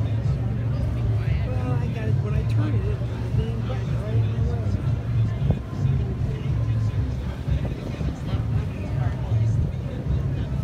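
Steady low rumble on the deck of a moving cruise ship, with people chatting faintly in the background during the first half.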